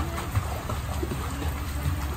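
Water splashing as a child swims across a backyard pool, over the steady pour of the pool's wall fountains, with a steady low rumble underneath.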